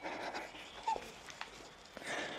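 Faint, stifled laughter held back behind hands: muffled breaths through the nose, with a brief high squeak about a second in.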